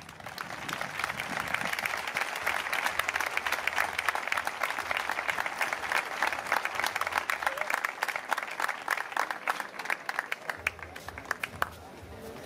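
Audience applauding, the clapping building over the first couple of seconds, then thinning to scattered claps before it dies away near the end.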